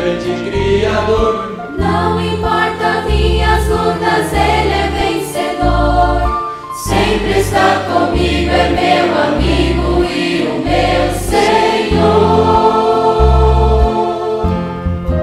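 Mixed youth choir singing a Portuguese-language gospel hymn over instrumental backing, with a bass line moving in steady, evenly paced notes.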